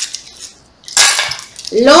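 Small hard divination pieces clicking and clattering against each other as they are gathered up by hand on a table, with a sharper burst of clatter about a second in.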